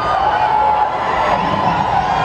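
Concert crowd cheering and screaming, with a few high held screams over a dense wash of noise.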